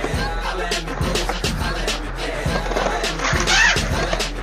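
Hip-hop track with a steady beat. About three seconds in comes a short rush of noise, skateboard wheels rolling on the concrete ramp.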